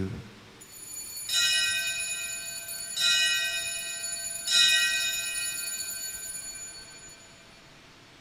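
Altar bell struck three times, about a second and a half apart, each stroke ringing on with high clear tones and fading away: the bell rung at the elevation of the consecrated host during Mass.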